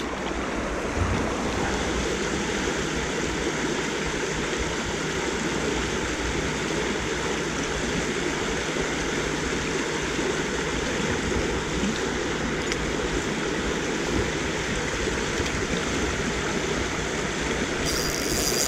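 A small river flowing steadily over shallow riffles, with an even, unbroken rush of water.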